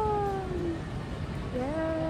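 A person's voice holding two long notes, like a sung or drawn-out 'yay'. The first sinks slowly in pitch and ends about a second in; the second starts lower near the end, rising briefly before it holds.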